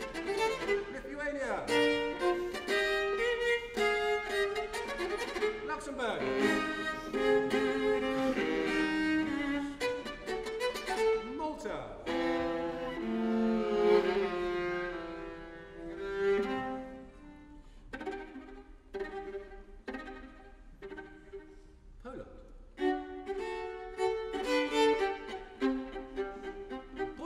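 Solo viola played with the bow: a lively tune from a medley of European national anthems, with several swooping slides between phrases. It turns quieter about two-thirds of the way through, then picks up again near the end.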